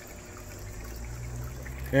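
Small garden fountain running on its 12-volt pump, with water trickling steadily from the spout into the basin. A steady low hum sits underneath.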